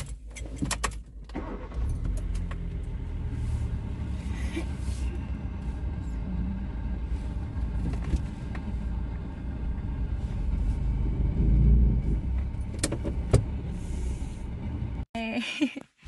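A few sharp clicks and key sounds, then a small Hyundai car's engine running steadily at idle, heard from inside the cabin, with two more sharp clicks near the end.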